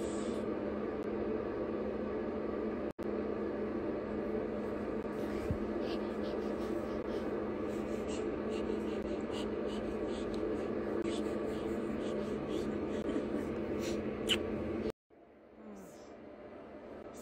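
A steady droning hum with faint small clicks and rustles over it, cutting off abruptly about a second before the end.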